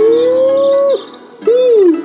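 A long howl-like call that glides up in pitch and holds until about a second in, then a shorter call that rises and falls near the end.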